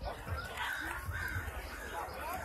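A bird calling twice with short harsh caws, over low thuds about twice a second.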